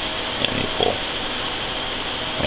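Steady background hiss, with a short low grunt or hum from a person about half a second to a second in.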